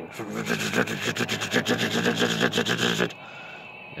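A man's voice making a fast rattling, buzzing noise in imitation of a radiator shaking, for about three seconds before it stops.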